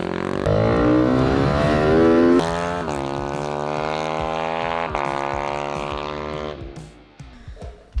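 Ohvale GP-0's 190cc four-stroke race-bike engine pulling hard through the gears, its pitch climbing and dropping sharply at each upshift, then easing off and fading near the end.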